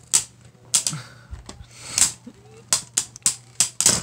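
Two Beyblade Burst spinning tops, Cosmo Dragon and Bushin Ashura, clashing in a plastic stadium: a string of sharp, irregular clacks as they strike each other, coming faster near the end, over a steady low hum.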